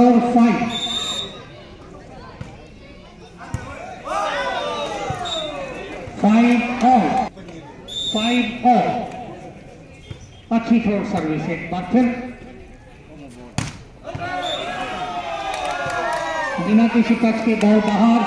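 Men's voices shouting and calling out in loud bursts around a volleyball court, with one sharp smack a little past the two-thirds mark.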